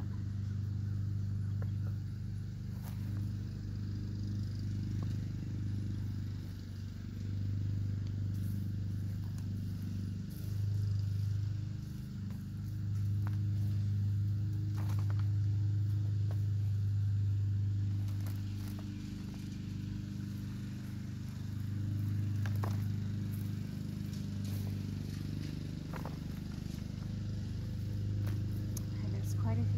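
Bare hands digging and sifting through loose potting soil in a large plastic container, with scattered soft crackles and rustles, over a steady low hum that carries most of the level.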